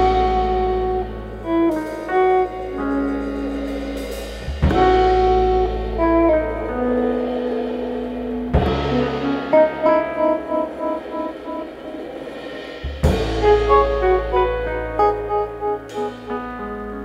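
A live jazz combo plays: a Nord stage keyboard and an upright double bass. Strong chord-and-bass hits land about every four seconds, with melodic lines between them.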